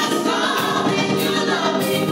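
A small church choir of mixed voices singing a gospel song, the voices holding long, sustained notes.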